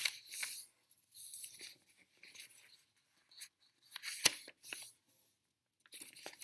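A sheet of paper being folded in half twice and creased by hand on a wooden tabletop: a series of short rustles and swishes as hands slide over the paper, with two sharp taps, one at the start and one about four seconds in.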